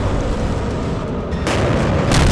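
Heavy continuous rumble of missile launches and explosions, with a fresh sharp blast about a second and a half in.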